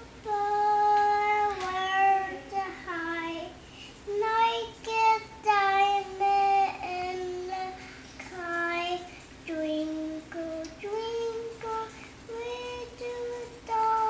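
A small girl singing a song on her own, unaccompanied, in a high child's voice with held notes that slide from one pitch to the next, pausing briefly between phrases.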